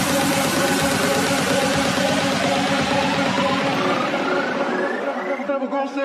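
Electronic dance music build-up: a rising synth sweep climbs over a dense hiss and a fast pulsing beat, thinning out just before the end.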